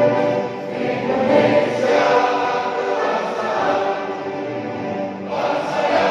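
A large group of people singing together in unison, holding long sustained notes.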